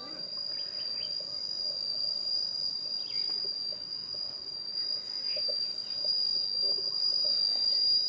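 Insects singing in a steady, unbroken high-pitched drone that grows slowly louder.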